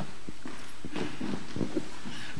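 Quiet hall room tone with faint, irregular soft knocks and thumps.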